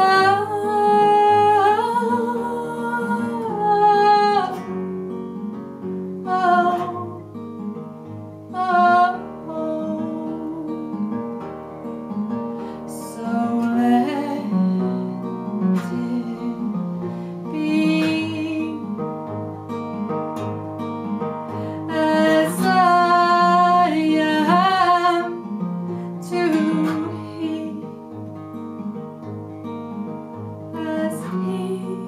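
A woman singing a folk song in phrases with long held, wavering notes, accompanying herself on an acoustic guitar that plays on steadily between the sung lines.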